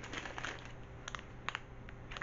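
Faint crinkling and a few light clicks of a small wax-melt bag being handled and lifted up to be smelled.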